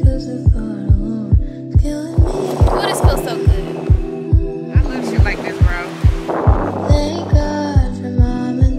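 Background music: a song with a deep, steady kick-drum beat a little over twice a second under sustained synth tones, with sung vocal lines coming in about two and a half seconds in and again near the end.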